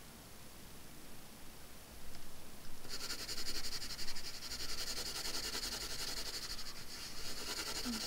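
Coloured pencil shading on paper: a steady scratching made of many rapid back-and-forth strokes, starting a few seconds in.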